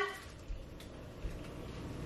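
Quiet room tone with two soft low thumps, about half a second in and just past a second in.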